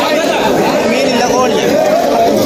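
Several people talking over one another in loud, continuous chatter.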